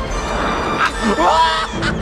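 Film orchestral score under an animated character's voice: a short cry that slides in pitch about a second in, then a quick run of cackling notes near the end as the lamp is taken.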